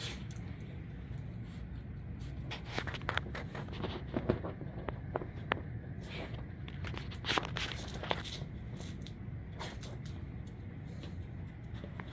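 A dog moving about and nosing around a fabric recliner: scattered light scrapes and clicks of paws and handling, the sharpest about four and seven seconds in, over a steady low hum.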